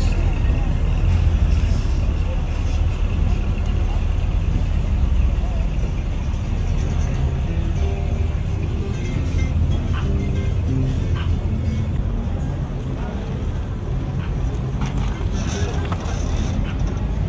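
Classic cars driving slowly past with a steady low engine and road noise, mixed with music and voices.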